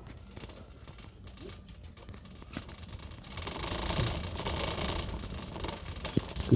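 Plastic shopping cart with a wire front being pushed along, its wheels and frame rattling; faint at first, the rattle grows louder and steady about three seconds in.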